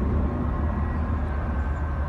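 Steady low rumble of distant city traffic in outdoor ambience, with a faint thin steady tone above it.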